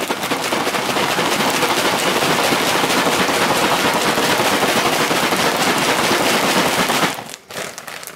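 Chocolate-coated cereal pieces rattling and crackling inside a sealed plastic bag as it is shaken hard and fast with powdered sugar and sprinkles. The shaking stops about seven seconds in.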